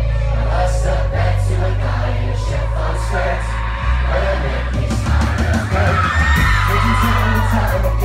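Live pop-rock band playing loud, with heavy bass and drums and a male lead singer's voice over it, heard from close to the stage.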